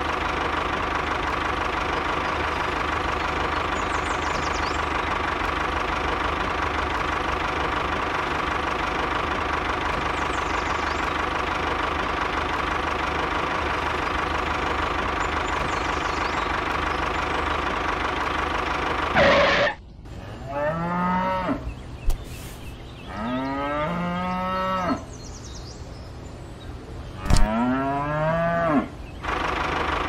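A tractor engine runs steadily, then cuts off suddenly about two-thirds of the way through. A cow then moos three times, each a long call rising and falling in pitch, with a couple of sharp clicks between the calls.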